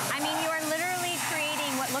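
Kärcher Follow Me 1800 PSI pressure washer spraying water onto weathered wooden boards: a steady hiss of spray over a steady motor hum, with talking over it.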